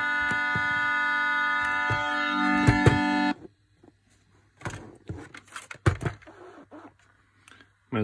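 Steady electronic organ-like tones from the freshly tuned Omnichord OM-84 and a small keyboard, held together as a chord, with the low note changing partway through. They cut off suddenly a little over three seconds in, followed by scattered knocks and clatter of the plastic instrument being handled.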